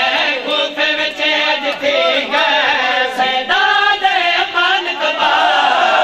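Urdu/Punjabi noha lament chanted by male voices, with rhythmic slaps of matam chest-beating by the mourners.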